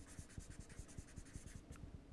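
A marker writing on paper: a quick, faint run of short scratchy strokes as a word is written out by hand.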